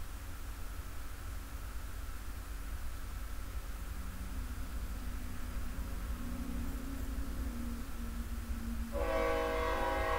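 A train passing close by: a steady deep rumble, then about nine seconds in the train's horn sounds a steady chord of several notes.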